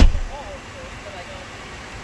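A single heavy thump right at the start, then a steady low background with a faint voice just after it.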